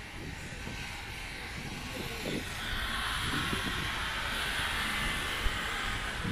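Street traffic on wet asphalt: a passing car's tyres hiss on the wet road, building from about halfway through and easing near the end, over a steady low rumble.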